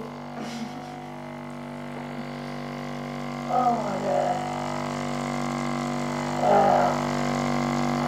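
Handheld percussion massage gun running against a patient's lower back, a steady motor buzz that grows slowly louder.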